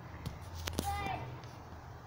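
Mostly a girl's voice saying a single word, "But," about a second in. Two sharp clicks just before it, over a steady low rumble, are phone handling noise as the camera swings up from the grass.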